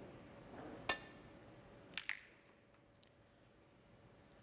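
Snooker break-off: one sharp, ringing click of balls about a second in, then two quick knocks about a second later as the balls come off the cushions.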